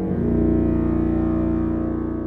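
Sampled low woodwinds (bass clarinet, bassoon and contrabassoon) holding a sustained low chord, swelling in and then slowly fading.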